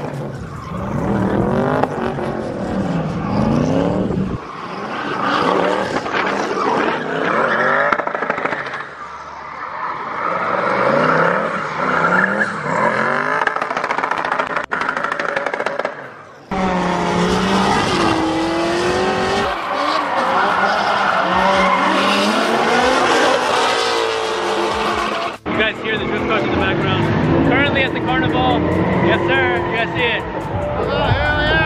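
Drift cars running a drift course, engines revving up and down hard while the rear tyres squeal as they slide. The sound comes in several separate runs that break off abruptly.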